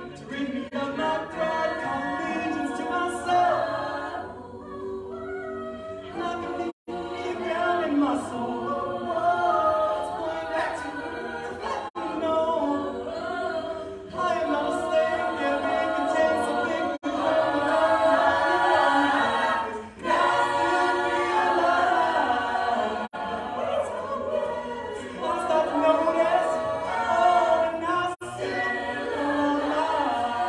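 A mixed-voice a cappella group singing in layered harmony with no instruments, with a momentary break about seven seconds in.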